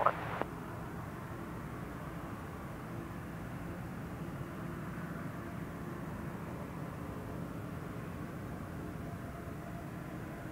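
Boeing 777-200ER's twin jet engines idling at a distance as the airliner lines up on the runway, a steady, even rumble and hiss with a faint tone in it.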